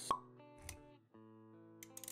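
Intro jingle: sustained music notes with a sharp pop sound effect right at the start and a short break in the music about a second in.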